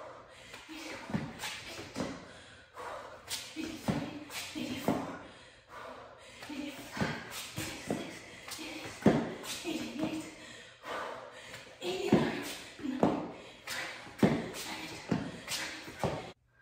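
Sneakers tapping and scuffing on a foam exercise mat in a quick irregular run of steps as the feet are thrown forward past the hands in V-mountain climbers, with short breathless voice sounds from the exerciser on the reps.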